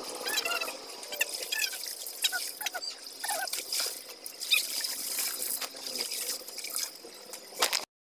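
Laundry being washed by hand in a basin: irregular splashing and dripping of water as wet cloth is wrung and squeezed. The sound cuts off suddenly near the end.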